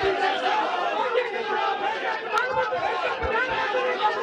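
Many people talking and shouting over one another: a dense crowd babble.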